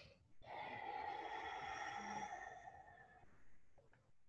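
A woman's long, slow audible exhale, faint and lasting nearly three seconds, breathed out in time with a flowing yoga movement.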